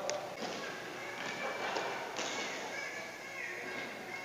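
Footsteps thudding and tapping on a badminton court in a large echoing hall, with distant voices of other players in the background.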